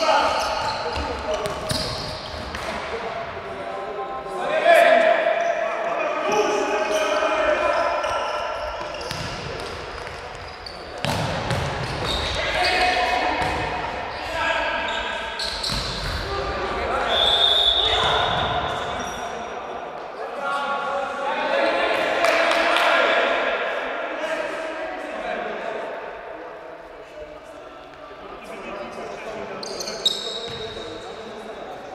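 Indoor futsal game in a reverberant sports hall: players calling and shouting to each other while the ball is kicked and bounces on the hard floor in scattered sharp knocks.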